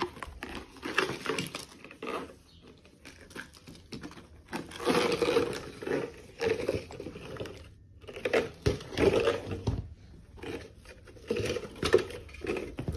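Packaging of a garden hose being ripped open and crinkled by hand, in irregular bursts of a second or two with short quieter gaps, as the hose is handled and pulled free.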